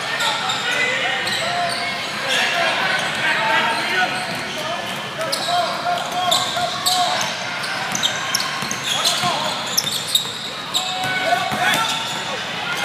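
Indoor basketball game sounds echoing in a large gym: many short high squeaks of sneakers on the court, a ball bouncing on the floor, and voices calling out from players and spectators.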